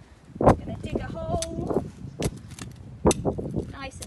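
Hand trowel digging into stony garden soil: a few sharp chinks and scrapes as the blade strikes stones, the loudest about half a second in and about three seconds in, with smaller clicks between.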